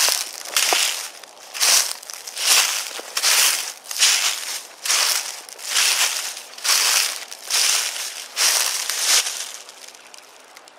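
Footsteps crunching through dry fallen leaves at a steady walking pace, about one step every 0.8 s, stopping just before the end.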